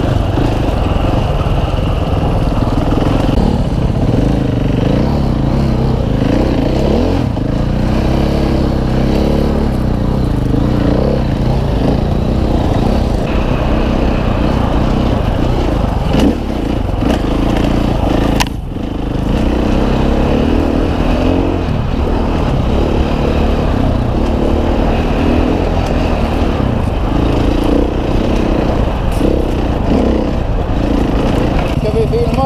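Husqvarna FE 501 single-cylinder four-stroke enduro bike riding a rough trail, its engine note rising and falling constantly with the throttle. The engine briefly drops off a little past the middle.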